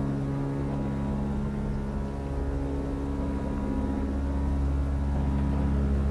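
Slow, eerie ambient music: low notes held for seconds at a time over a deep, continuous rumble, with no sudden changes.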